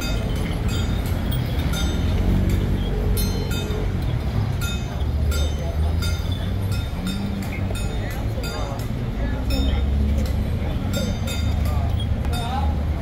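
Metal percussion clashing in an irregular beat, two or three short ringing strokes a second, over a steady low rumble and crowd voices; typical of the gong-and-cymbal accompaniment of a Ba Jia Jiang procession troupe.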